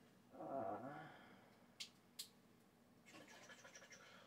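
Two sharp little clicks about half a second apart as a knife pries at a tight plastic fitting on a glass weight, with faint scraping near the end; otherwise near silence after a drawn-out 'uh'.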